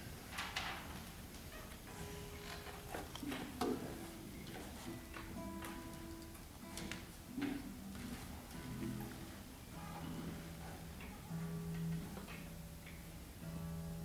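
Two nylon-string classical guitars sounding soft, sparse plucked notes, each left to ring, with a few knocks of handling near the start.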